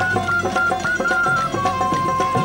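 Sindhi folk music in an instrumental passage: a high melodic instrument holds long notes and steps between them, over a steady beat of hand percussion.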